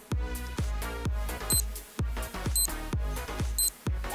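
Electronic dance background music with a steady kick-drum beat about twice a second. Near the end come three short high beeps a second apart, a timer's countdown to the end of the work interval.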